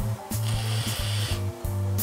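Hiss of about a second from a VOOPOO Drag pod vape being drawn on, over background music with a steady bass line.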